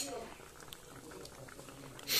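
Thick curry bubbling and sizzling faintly in an iron kadai while a steel ladle stirs it, with a few light ticks of the ladle against the pan.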